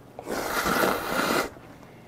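A person slurping noodles from a bowl of spicy jjamppong, one airy suck lasting a little over a second.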